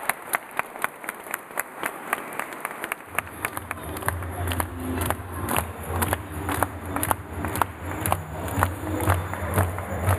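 Audience clapping: many sharp hand claps. About three seconds in, a low steady hum starts underneath.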